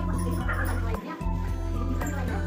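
Background music with a deep, steady bass line; it dips briefly about a second in.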